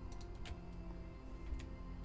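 A few faint computer-mouse clicks over a low, steady hum.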